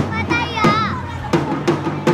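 Young Pioneer marching drums beating a steady march rhythm, about three strikes a second. A child's high voice calls out once in the first second.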